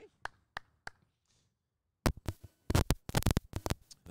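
A few scattered sharp taps, then a moment of dead silence, then a quick run of sharp taps and knocks in the second half.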